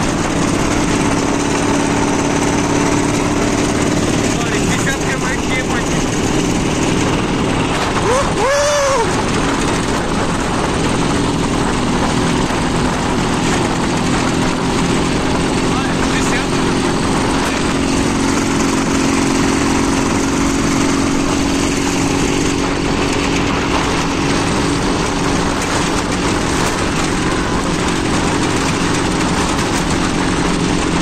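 Dnepr motorcycle's flat-twin engine running steadily while riding on a gravel road, with tyre and wind noise. A brief rising-and-falling tone is heard about eight seconds in.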